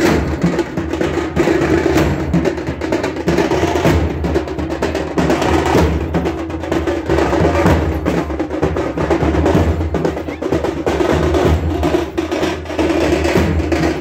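Loud drumming, with rapid sharp strikes running on without a break.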